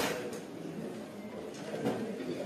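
Low murmur of a hall, with a brief knock about at the start and a fainter one near the end.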